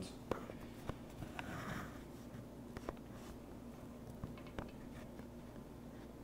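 A few faint, scattered clicks and light taps over a steady low hum.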